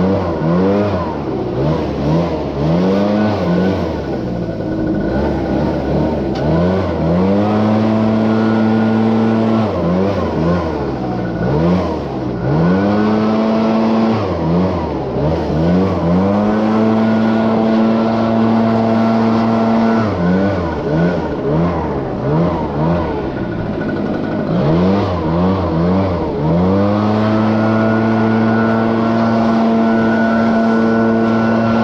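Gas-powered leaf blower running, its throttle repeatedly eased off and opened again so the pitch wavers up and down, then held at full speed for a few seconds at a time, four times over.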